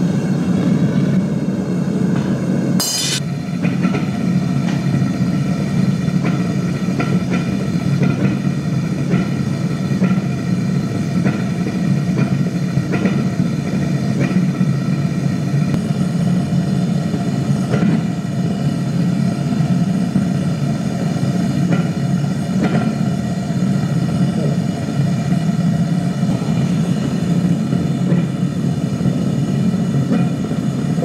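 Propane foundry furnace burner running steadily, a dense low rushing noise, while copper melts in the crucible. One sharp knock about three seconds in, and a few faint ticks after it.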